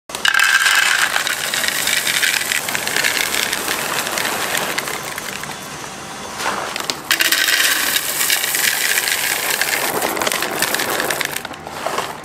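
Chocolate callets poured into a glass bowl: a loud, dense rattle of many small hard discs hitting the glass and each other. The pouring stops about six seconds in, and a second pour of dark chocolate callets runs from about seven seconds until shortly before the end.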